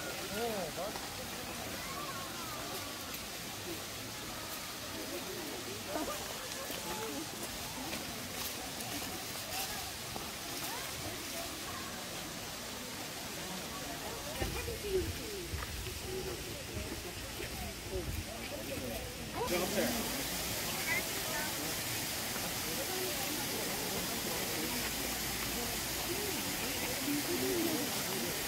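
Indistinct chatter of many people's voices. About two-thirds of the way in, a steady hiss of falling water from a waterfall comes in suddenly and runs on under the voices.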